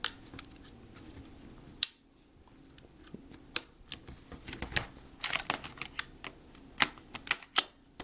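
Irregular plastic clicks, taps and knocks of an HP Mini 210 netbook's battery being worked into its bay by hand over several fumbling tries, with sharper clicks near the end as it seats.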